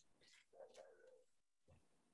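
Near silence, with one brief faint sound about half a second in.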